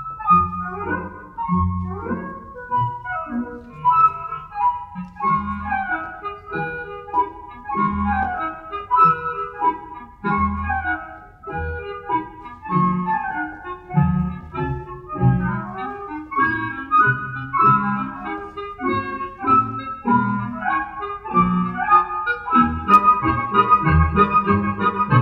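Recorded orchestral ballet music, a woodwind melody of quick running notes over a regular, detached low accompaniment.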